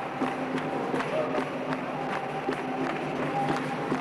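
Capoeira roda: the circle claps in a steady rhythm, a bit under three claps a second, over voices singing together.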